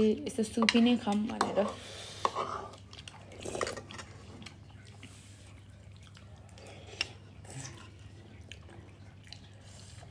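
A voice for about the first two seconds, then people slurping and chewing hot pot noodles, with light clicks of spoons and chopsticks against bowls and one sharp click about seven seconds in.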